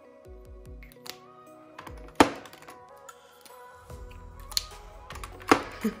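Background music with steady held notes, over a few sharp clicks and taps of lipstick tubes being picked up, handled and set back in a drawer organizer. The loudest click comes about two seconds in, with others near the end.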